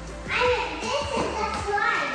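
Young children chattering and playing, over background music.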